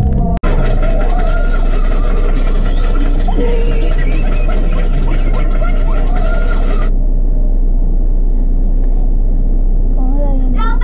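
Steady low rumble of a car idling, heard from inside the cabin, under muffled voices and faint music. The higher sounds drop away abruptly about seven seconds in.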